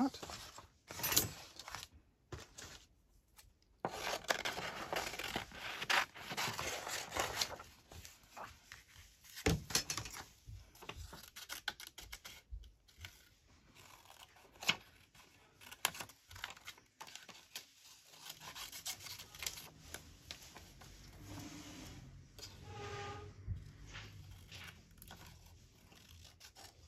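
Small scissors snipping through a sheet of printer paper, cutting out a printed bird image, in short irregular cuts, with the paper rustling as it is turned and handled.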